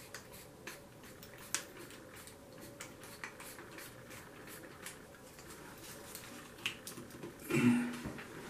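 Faint, irregular clicks from a drill's keyless chuck being twisted by hand to tighten a tile bit; the drill motor is not running. A brief vocal sound near the end.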